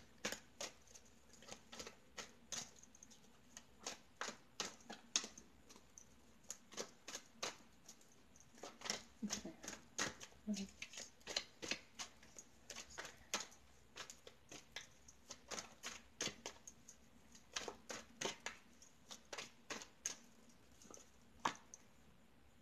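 Tarot cards being shuffled by hand: a run of sharp, irregular card clicks and snaps, often several a second, with a few short pauses.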